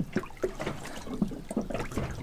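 Small, irregular wet sounds: faint splashing and squelching ticks of water and wet handling, with no steady tone.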